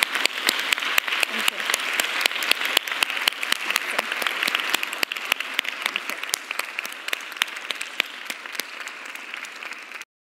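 A small audience applauding, with separate hand claps standing out; the applause slowly dies down.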